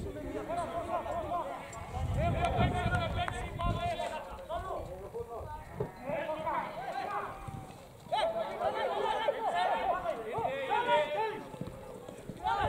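Several people's voices talking and calling out, overlapping, with a brief lull just before the last third.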